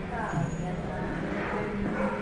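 A pause between sung lines of verse: a faint voice over steady low background noise and hum.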